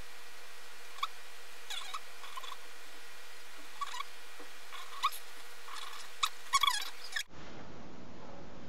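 A string of short, high-pitched squeaks, each falling slightly in pitch, scattered irregularly and coming faster in a quick cluster near the end, before the sound cuts off abruptly.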